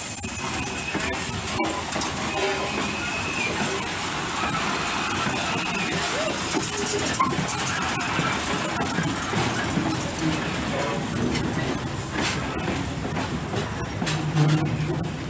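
Norfolk & Western 611, a J-class 4-8-4 steam locomotive, rolling past at close range: a steady mix of running gear and wheel-on-rail noise.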